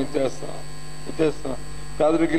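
Steady low electrical mains hum in the microphone and sound system, with two short fragments of a man's speech, one at the start and one a little past a second in.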